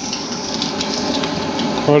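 Egg frying in a pan on a small gas canister stove: a steady sizzle and hiss.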